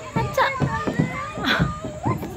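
Young children's voices chattering and babbling while they play, with a couple of short sharp knocks among them.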